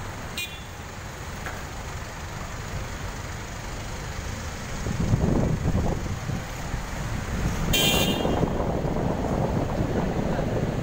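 Vehicle engines idling and moving in queued traffic, a steady low rumble that grows louder about halfway through. A short, high car-horn toot sounds near the end.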